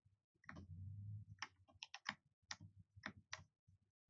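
Faint clicking at the computer desk: about eight sharp, separate clicks spread over a couple of seconds, after a brief low rumble about half a second in.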